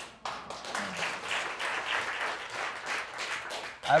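Courtroom gallery applauding: many people clapping at once in a dense, even spread. It starts just after a brief hush and stops as speech resumes near the end.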